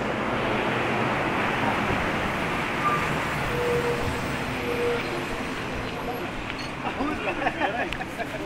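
Steady road traffic noise from vehicles passing on the street, with men's voices talking in the background that become clearer near the end.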